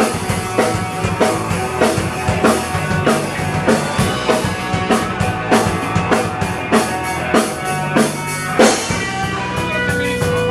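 Live rock band playing: a drum kit keeping a steady beat with electric bass and guitar, loud and in a small room.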